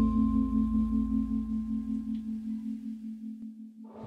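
A single struck, singing-bowl-like chime, part of the intro title music, ringing on and slowly fading. A low hum beneath it dies away about halfway through, and the ringing is cut off just before the end.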